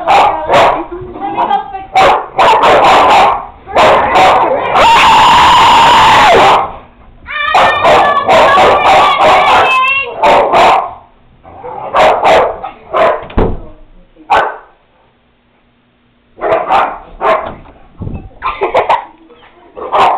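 Girls screaming and shrieking with laughter while dogs bark and yelp in a fight, very loud and clipping, with one long shrill scream about five seconds in and a short lull near the three-quarter mark.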